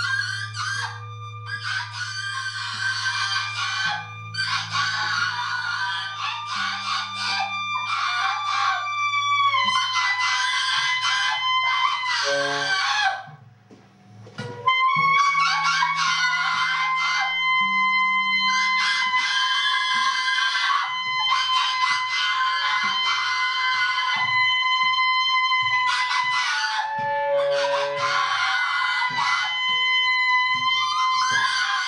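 Free-improvised noise music: a woman screams raw and high into a microphone in repeated blasts of one to three seconds, over a held high tone and a low guitar drone. The sound drops out almost completely for about a second and a half, about 13 seconds in, then resumes.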